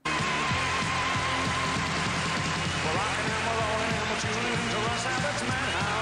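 End-credits theme music of a 1980s TV variety show, a wavering held note over a steady beat, with a melody line coming in about halfway.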